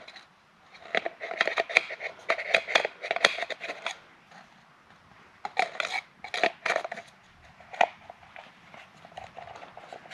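Light plastic clicks and knocks as a new cartridge oil filter element is handled and fitted into its plastic housing cap, lining up the two flat tabs. They come in two spells of quick clatter, the first just after the start and the second past the middle.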